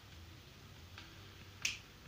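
A faint, steady low hum with a single sharp click near the end.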